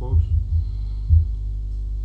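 Steady low electrical hum from a table microphone and sound system, with four short, dull thumps in the first second or so, typical of bumps picked up through the table or microphone stand.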